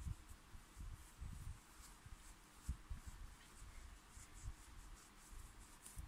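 Faint rustling and soft irregular bumps of fingers pushing polyester fiberfill stuffing into a crocheted amigurumi piece.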